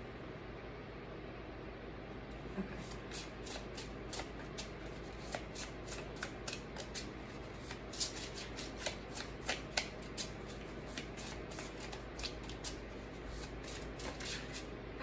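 A deck of tarot cards being shuffled by hand. The cards flick against each other in quick, irregular clicks that start a couple of seconds in and keep going.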